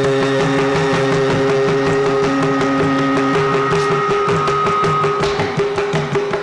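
Carnatic classical music in raga Ganamoorthi: a melodic line holds one long note over a steady drone. Hand-drum strokes from the mridangam grow busier near the end.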